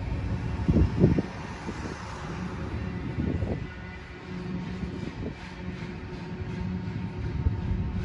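BNSF manifest freight train rolling past, a steady low rumble with faint wheel clatter and a couple of louder thumps, the loudest about a second in.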